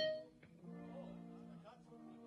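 Electric guitar played through the amplifier: a sharp struck attack right at the start, then a chord ringing on steadily. The guitar is sounding again after its battery had gone flat.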